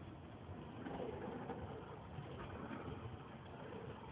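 Car cabin noise while driving on a snow-covered road: a steady low rumble of engine and tyres.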